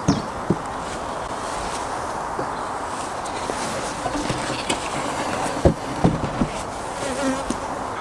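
Honeybees buzzing around an opened hive in a steady, even hum, with a few light knocks along the way.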